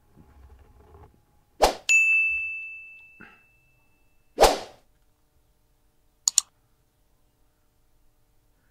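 Animated intro sound effects: a short noisy hit about one and a half seconds in, then a bell-like ding that rings and fades over about a second and a half. A second short hit comes a little past four seconds, and a quick double click comes a little past six seconds.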